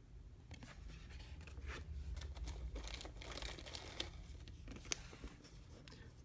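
Faint, irregular crinkling and rustling of foil pack wrapper and plastic as trading cards are handled and sorted by hand.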